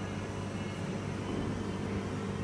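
Aquarium air pump humming steadily, with a low even hum under a faint hiss of aeration.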